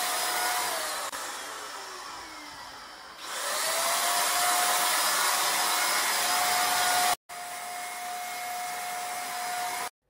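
Small electric motor of a handheld disinfectant sprayer running with a steady whine and air rush. It winds down about a second in, then speeds back up a little after three seconds, and cuts out briefly near seven seconds.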